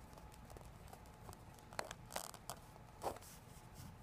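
Pen writing on graph paper: faint scratching of the tip with a few short, sharper ticks, mostly in the second half.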